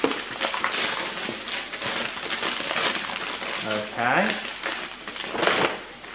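Gift-wrapping paper crinkling and tearing in irregular bursts as a small present is unwrapped by hand.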